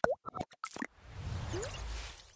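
Logo-animation sound effects: a quick run of short pops and plops, then a swelling whoosh with a rising tone about a second in.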